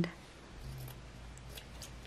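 Scissors cutting through craft felt: a few faint snips about a second and a half in.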